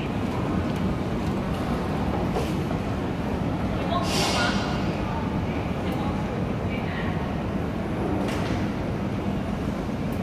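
Escalator running steadily as it carries the rider up, a continuous low mechanical rumble with a steady hum. A brief higher hiss comes about four seconds in.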